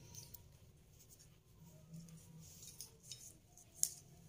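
Faint scrapes and ticks of a clear plastic ruler and measuring tape being handled on cloth, with one sharper click near the end.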